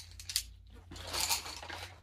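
Handling of wooden colored pencils and paper: two light clicks as the pencils are handled, then about a second of paper scraping and sliding as the test card is moved on the sheet.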